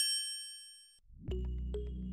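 A single bright chime, struck once and ringing out over about a second, then soft music with a steady bass and light plucked notes starts.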